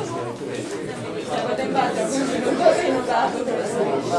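Many students talking among themselves at once in a lecture hall: a steady babble of overlapping voices.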